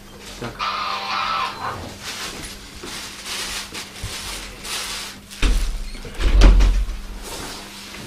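Rummaging and handling noises during a search of an office: a scraping slide about half a second in, rustling, then two heavy low thumps in the second half, over a steady electrical hum.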